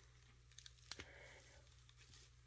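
Near silence, with a few faint clicks and crackles about half a second to a second in as gloved hands pry apart a softened mango seed husk.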